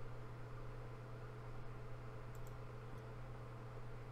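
Steady low hum, with a couple of faint computer mouse clicks about halfway through.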